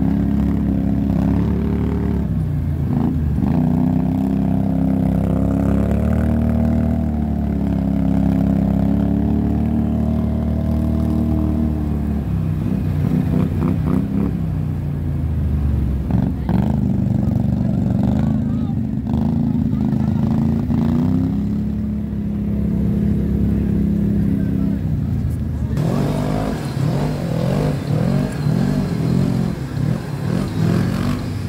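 ATV engines running at riding speed, the nearest one's pitch rising and falling with the throttle. The sound changes about 26 seconds in as the ride moves onto a trail.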